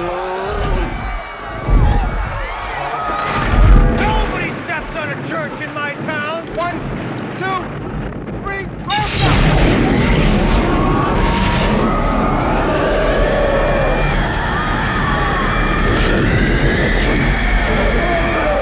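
Film sound effects: heavy booming thuds and repeated rising-and-falling wails, then, about nine seconds in, proton-pack beams open fire with a sudden, loud, dense, steady noise that keeps going.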